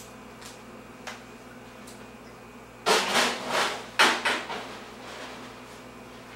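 Knocks and clatter of hard objects being handled, in two short clusters about three and four seconds in.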